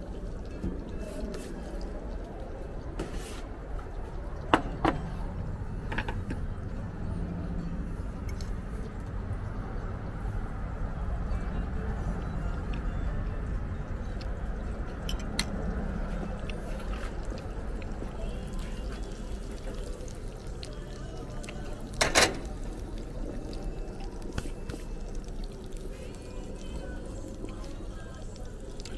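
Slices of sucuk (Turkish beef sausage) frying in butter in a pan, a steady sizzle, with a sharp click about five seconds in and another a little after twenty seconds.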